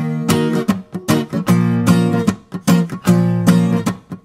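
Acoustic guitar strumming a chord progression with no singing, each chord struck sharply and left to ring before the next.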